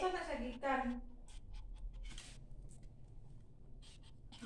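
A short voice in the first second, then a puppy's claws tapping and scraping irregularly on glazed tile stair steps as it steps its way down.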